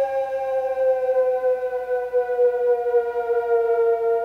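A single held electronic tone in the music, rich in overtones, gliding slowly and steadily down in pitch like a siren winding down.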